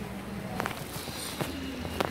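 Street background noise while walking along a shopping street, with faint distant voices and a couple of short knocks.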